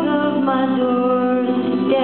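Live band music: electric guitar and drums under a held melody line that steps slowly down in pitch.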